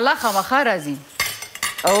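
A metal spoon clinking and scraping against a stainless steel cooking pot as food is stirred, with a few sharp clinks about a second in, over people talking.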